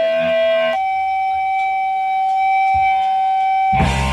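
Electric guitar feedback from an amplifier: a single held, whining tone that steps up in pitch about a second in and then sustains. Near the end the full hardcore punk band comes in with loud distorted guitars and drums, recorded live.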